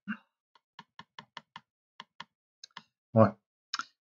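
About ten soft, quick clicks from a computer mouse over roughly two seconds as a spreadsheet is scrolled, followed near the end by a short spoken 'ouais'.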